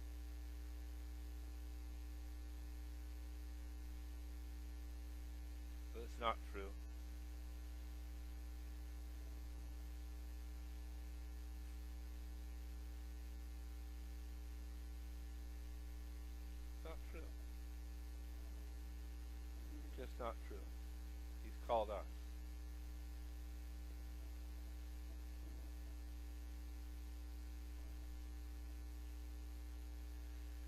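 Steady electrical mains hum in the sermon's audio feed. A few short, quiet voice sounds break in, one about a fifth of the way in and a few more just past the middle.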